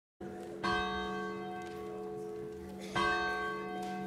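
A church bell tolling: two strikes a little over two seconds apart, each ringing on with a long, slowly fading hum that carries into the next.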